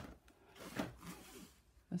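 Soft rustling and scraping of hands handling old cloth-bound hardcover books, one book slid across a cardboard surface.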